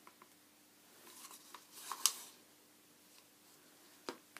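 Faint handling sounds of plastic paint cups and a stirring stick, with one brief scrape about halfway through, over a faint steady hum.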